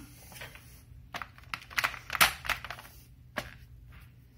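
Irregular sharp clicks and taps of hard plastic, about eight in four seconds: the plastic grille and housing of a Bionaire window fan being handled and fitted back together.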